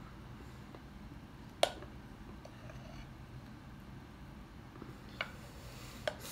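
A metal spoon clicking sharply against a glass bowl once, about a second and a half in, and more faintly near the end, as thick cake batter is spooned in; otherwise only a faint steady hum.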